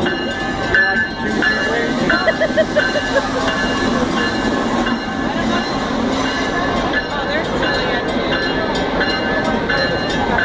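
Amtrak's Siemens ACS-64 electric locomotive and its stainless-steel passenger car rolling slowly past at close range, a steady rumble of the moving train with a thin, steady high-pitched squeal over it, and crowd chatter around.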